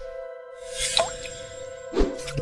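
Animated intro jingle: a held musical chord under a swelling whoosh, with a short rising bloop about halfway through and a hit at the end.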